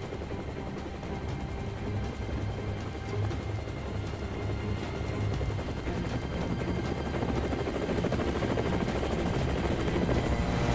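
Helicopter in flight heard from inside the cabin: steady engine and rotor noise with a rapid, even rotor beat, growing slowly louder.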